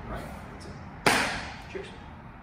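A single sharp slap of a fist struck into an open palm in a martial-arts closing salute, about a second in, with a short echoing decay.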